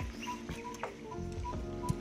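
A bird calling outdoors, a short note of steady pitch repeated about every third of a second, over faint background sound with a couple of small clicks.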